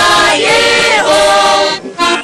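A mixed group of men and women singing a folk song together, loud and unaccompanied-sounding, holding long notes, with a brief break for breath near the end.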